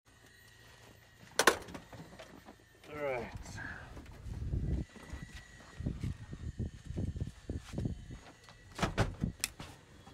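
Handling noise of a person moving about in a small aircraft's cabin: rustling and knocks, with a sharp click about a second and a half in and more clicks near the end. A short gliding pitched sound comes about three seconds in.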